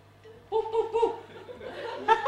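Audience laughing, a burst of laughter starting about half a second in and tailing off.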